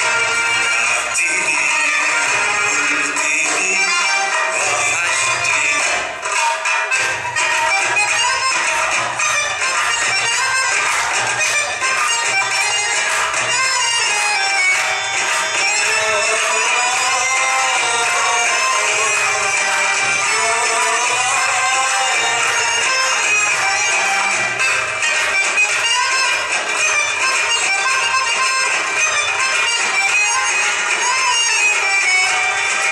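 Belly dance music with a melody over steady percussion, including a stretch of quick drum strikes in the middle.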